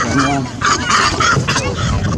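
A quick series of short animal calls, about four or five a second, with voices underneath.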